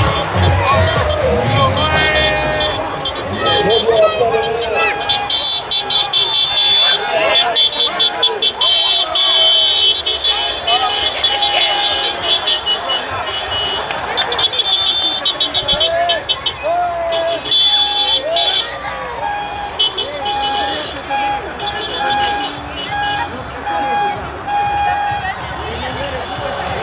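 Tour de France publicity caravan vehicles passing, with voices and music over the noise, and a horn-like tone beeping in a steady series of short pulses through the second half.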